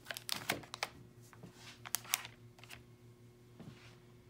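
Faint scattered light clicks and taps of a doll and a wrapped snack packet being handled on a tabletop, over a faint steady hum.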